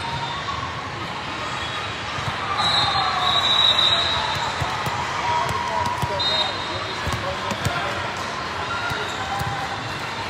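Busy volleyball tournament hall: a steady din of many voices with sharp hits of volleyballs being struck and bouncing across the courts. A referee's whistle is held for about a second and a half about three seconds in, with a shorter whistle a few seconds later.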